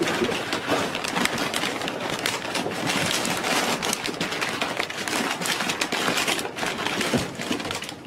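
A large brown paper evidence bag being unfolded and pulled open, its stiff paper crinkling and rustling continuously.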